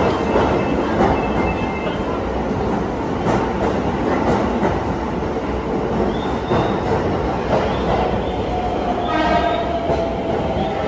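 Toei 10-300 series electric subway train pulling into an underground station and slowing: a steady running rumble with occasional clacks of the wheels over rail joints. Near the end, a tone comes in and slides slightly down in pitch as the train brakes toward its stop.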